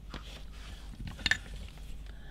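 Tools being handled on a workbench as a soldering iron is picked up: a few light taps, then a brief metallic clink about a second and a quarter in.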